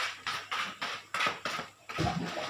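A quick run of short splashes and knocks, about four a second, from a small fish held as bait and jiggled at the surface of a glass aquarium.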